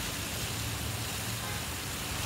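Steady rush of water running down a long cascading fountain.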